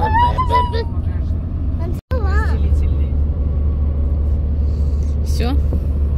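Steady low road and engine rumble inside a moving car's cabin, with children's high-pitched voices over it; the sound cuts out for an instant about two seconds in.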